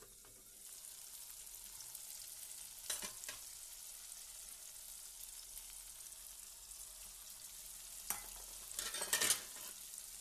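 Oil and masala sizzling in an aluminium kadai, the hiss rising about half a second in. There is a short clatter about three seconds in, and a louder run of clatter and scraping near the end as fish roe goes in from a steel bowl.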